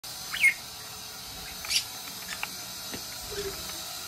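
A few short, high bird chirps over a steady hiss. The first and loudest comes about half a second in and slides down in pitch, another follows near two seconds, and there are a couple of faint ticks after.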